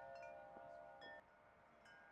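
Faint chimes ringing, several tones at once, with a few light strikes; they fade out about a second in.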